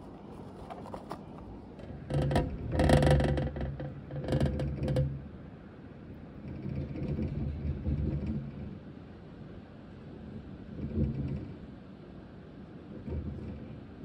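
Dwarf hamster running in a plastic exercise wheel: the wheel rumbles and whirs in spells that start and stop. The loudest is a clattery spell a couple of seconds in, and shorter runs come later.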